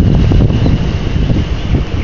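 Storm wind buffeting the microphone: a loud, fluttering low rumble.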